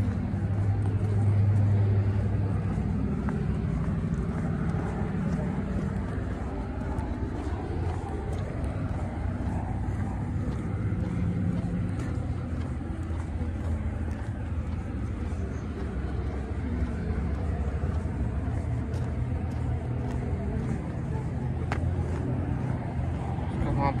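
Steady rumble of road traffic from a nearby highway.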